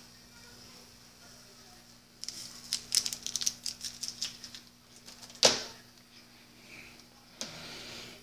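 Quiet handling sounds: a quick run of light clicks and taps for about two and a half seconds, then one louder knock about five and a half seconds in.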